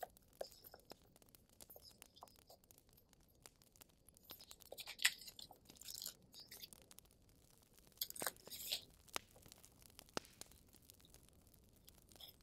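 Paper stickers and cut-out ephemera rustling and crinkling as they are handled and laid on a scrapbook page, with scattered light clicks and taps. There are brief louder rustles about five seconds in and again about eight seconds in.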